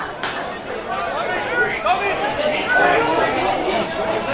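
Spectators chattering at a football ground, several voices overlapping with no clear words.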